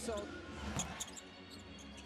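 Basketball dribbled on a hardwood court, a few sharp bounces over the steady background noise of the arena.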